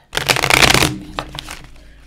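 A small Rider-Waite tarot deck being shuffled by hand. A quick dense flutter of cards lasts under a second, then thins into a few scattered card clicks.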